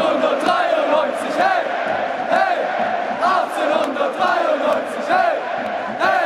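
A large football stadium crowd chanting together, with loud repeated shouted phrases rising and falling in rhythm.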